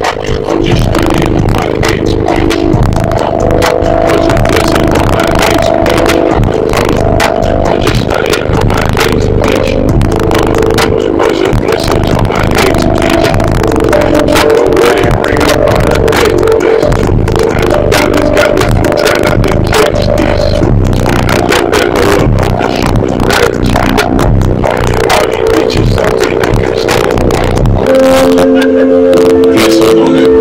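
Bass-heavy music played at very high volume through a car audio system with four SP Audio SP15X subwoofers, a deep, continuous bass line under a melody, with a crackling, rattly edge throughout.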